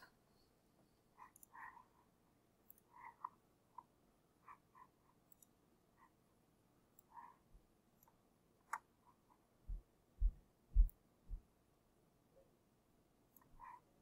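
Faint, scattered clicks of a computer mouse, with a few soft low thumps about ten to eleven seconds in.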